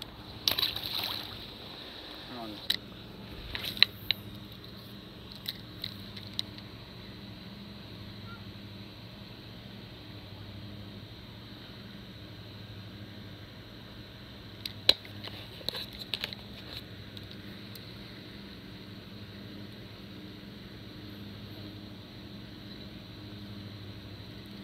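A short splash of lake water about half a second in as a released crappie goes back in. It is followed by scattered sharp clicks from handling a light spinning rod and reel, over a steady low outdoor hum.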